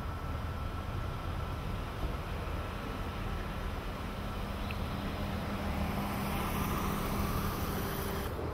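Steady background rumble with a low hum; a hiss builds over the last few seconds and cuts off abruptly right at the end.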